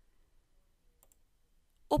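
A single faint computer mouse click about a second in, against near silence.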